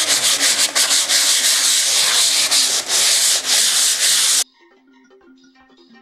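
220-grit sandpaper rubbed by hand over a dry, cracked plaster wall in quick back-and-forth strokes, a light sand to knock down sharp flakes. It cuts off suddenly about four and a half seconds in, leaving faint music.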